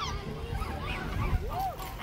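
Water birds calling: a few short calls that rise and fall in pitch, the clearest one about a second and a half in.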